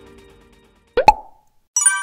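Music fading out, then a quick rising cartoon pop sound effect about a second in. Near the end a bright, ringing chime follows, the sound of the animated like-button tap.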